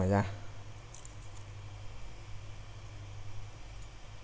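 Faint scratching of a razor blade peeling the thin metal shield cover off an iPhone XR logic board, a few short scrapes about a second in, over a steady low electrical hum.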